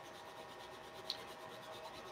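Faint scratchy rubbing of a brown crayon pressed firmly onto smooth watercolour paper in repeated strokes going one direction, with one small tick about a second in.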